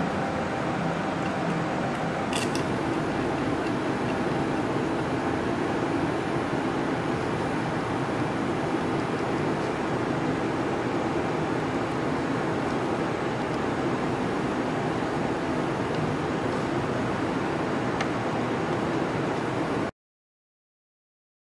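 Steady, even mechanical hum of background machinery, with a faint click about two seconds in.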